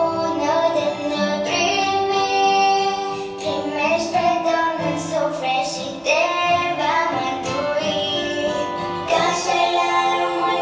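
A young girl singing a Romanian Christmas carol (colind) into a microphone, with held, wavering notes over a steady instrumental backing track.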